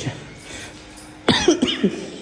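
A person coughing: quiet at first, then a loud, harsh cough breaks out just past a second in. The speaker blames it on a cold drink.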